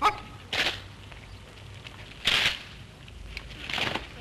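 Infantry rifle drill: a rank of soldiers brings its rifles down from the shoulder to the order in unison. There are three short crashes of rifles and butts coming down, about a second and a half apart.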